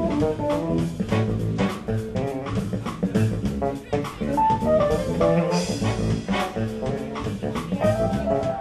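Live smooth jazz played by a trio of bass, keyboards and drums: a melody line over a moving bass line and a steady drum beat.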